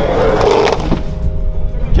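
Van engine pulling a stuck Ford Transit out of soft sand, a tyre rolling over a plastic traction board and through the sand, with a louder rush of noise in the first second and a steady low rumble under it.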